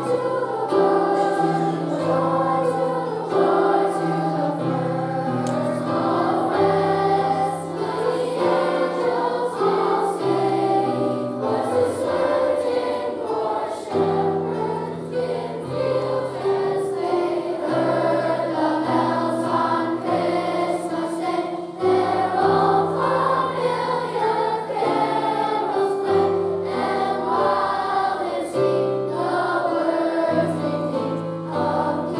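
Children's choir of sixth graders singing a Christmas carol medley, with steady low accompaniment notes under the voices. The medley strings about twenty carols into one song of about three minutes.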